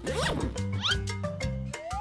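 A suitcase zipper pulled open in a quick rising rasp just after the start, over background music. A rising whistle-like glide follows near the end.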